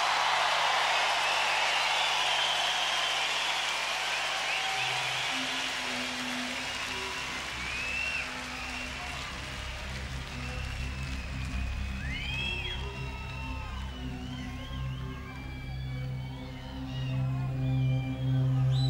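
A large concert crowd cheering and clapping, fading over the first several seconds, as low sustained synthesizer chords open the song and slowly build. Scattered high gliding whistles rise over the chords later on.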